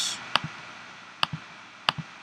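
Three sharp computer mouse clicks, about a second apart, the middle one followed by a softer second click.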